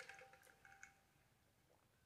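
Near silence, with a few faint swallowing sounds in the first second as a person drinks from a tumbler.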